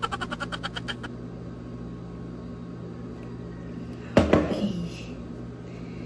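A person drinking water from a glass mug: a quick rattling run of about a dozen pulses a second in the first second, then about four seconds in a loud sudden sound with a short falling breathy voice, over a steady low hum.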